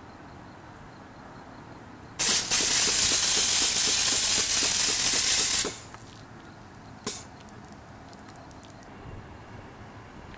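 Intelagard Macaw Backpack compressed-air foam unit discharging pepper-spray foam through its fan nozzle: a loud hiss starts suddenly about two seconds in, holds for about three and a half seconds, and cuts off sharply. A short second burst follows about a second and a half later.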